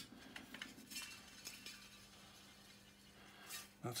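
Faint, light metallic clicks and taps as a threaded steel rod is turned and handled in the metal base of a sweet vending machine, mostly in the first second or so.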